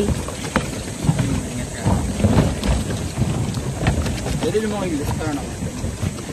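Wind buffeting the microphone in a low, steady rumble, with irregular thuds from footsteps on a floating plastic cube dock and a few brief voices.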